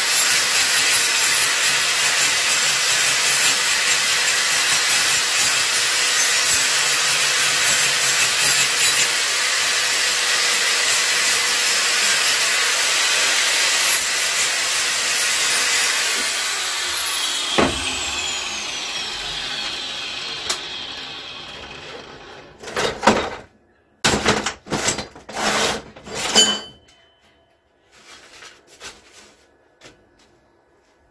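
Electric angle grinder running steadily with a high whine, then switched off and winding down in a falling whine about halfway through. Several short, loud bursts follow near the end, then only small knocks.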